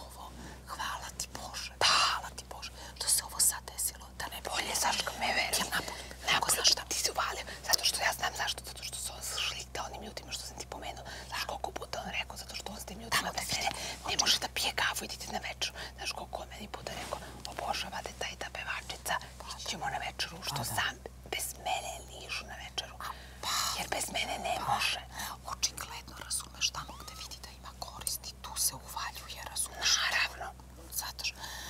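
Two women talking to each other in whispers, their voices close and breathy.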